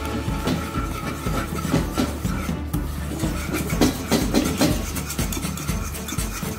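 A wire whisk stirring a thick custard and bread-crumb mixture in a pan, with quick repeated clicks and scrapes of the wires against the pan.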